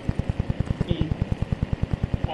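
A low, rapid pulsing thrum, about ten beats a second, runs evenly through the recording: a steady background noise in the old sermon recording rather than any event, with a brief faint trace of voice about a second in.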